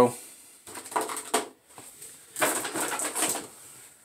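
Light clicks and rustles of hands handling a plastic action figure on a tabletop, in two short spells.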